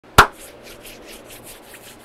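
One sharp hand clap, then hands rubbed briskly together, a quick swishing of about seven strokes a second.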